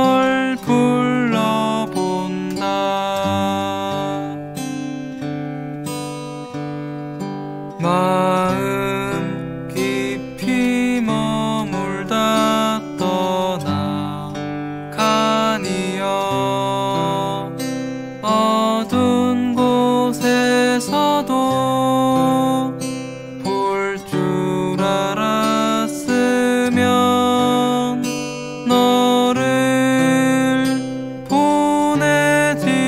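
Korean folk song: strummed acoustic guitar accompanying a solo singer.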